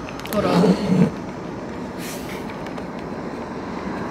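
Steady noise of street traffic heard from inside a parked car, with a brief bit of voice in the first second and a short burst of noise about two seconds in.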